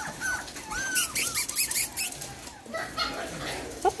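Puppy whimpering: a string of short, high squeaks in the first two seconds, with some rustling against the blanket.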